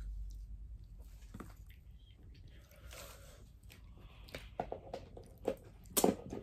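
Close-up eating sounds of chicken wings being chewed: chewing and mouth smacks, a run of short sharp smacks growing louder in the last two seconds.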